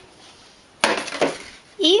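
A short clatter of hard objects starting just under a second in and fading within about half a second, as a spool of black sewing thread is picked up among other thread spools.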